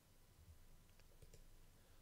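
Near silence: room tone with a few faint clicks about a second in.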